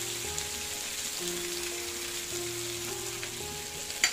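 Fish pieces in a masala coating sizzling steadily as they shallow-fry in oil on a flat pan. Soft background music of held notes, changing about once a second, plays under the sizzle.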